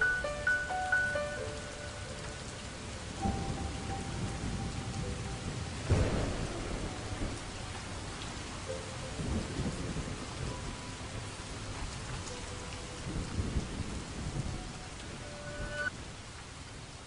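Steady rain with rolling thunder: low rumbles come and go, with a sharp crack about six seconds in, the loudest moment. The last notes of a melody fade out at the start, and faint held music notes sit under the rain.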